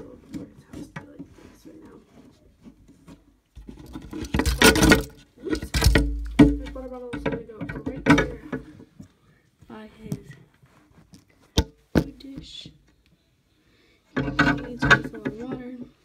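Talking mixed with close handling noise: bedding rustling and bumping right against the phone's microphone, with heavy thuds about five seconds in and two sharp clicks about two-thirds of the way through.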